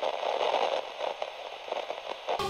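Crackling, hissing TV-static sound effect for a glitch transition, cutting off suddenly at the end.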